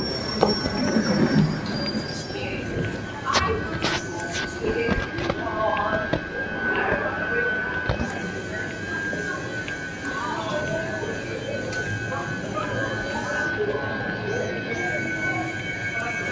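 London Underground platform ambience beside a Northern line train standing with its doors open: a steady high-pitched hum runs through it, over murmuring voices, with a few sharp clicks about three to four seconds in.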